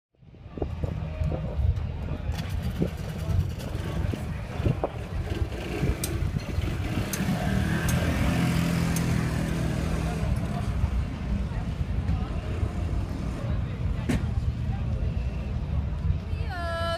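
Outdoor bustle around a shuttle van stop: a vehicle engine running close by, with a steady low rumble, under the voices of a passing crowd and a few sharp clicks.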